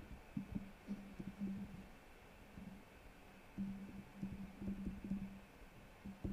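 Laptop keyboard being typed on, heard as irregular soft low taps, over a low steady hum that comes and goes.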